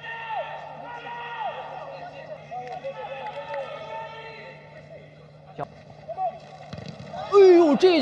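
Faint voices over a steady low hum, with no crowd noise; a man's voice starts speaking loudly near the end.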